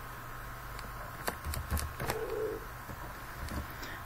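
A few separate keystrokes on a computer keyboard, heard as sharp clicks over a steady electrical hum, with a brief low tone about two seconds in.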